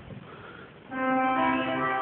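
Bedient tracker pipe organ sounding a chord on its trumpet reed stop with the tremulant drawn. The chord enters about a second in, more notes join just after, and it holds steady.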